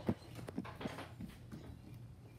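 Faint footsteps on a hardwood floor, a few short steps a few tenths of a second apart.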